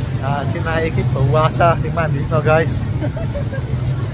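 A steady low hum, with a man talking over it in the first part.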